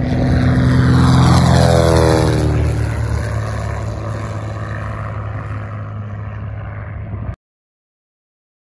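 A 1946 Fairchild 24 single-engine propeller airplane passes low overhead. Its engine and propeller drone is loudest in the first two seconds, with the pitch dropping as it goes by. The sound then fades as it flies away and cuts off suddenly near the end.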